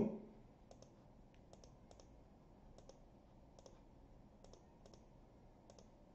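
Faint, irregular clicking of a computer mouse and keyboard, a dozen or so clicks, often two in quick succession.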